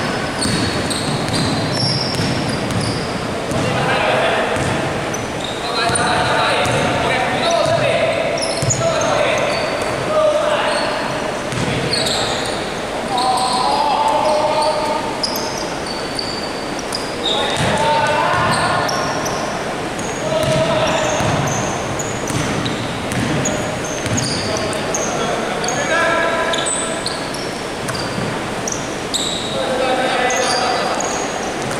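Live basketball play echoing in a large gym: the ball bouncing on the wooden court, sneakers squeaking in short high chirps, and players calling out to one another.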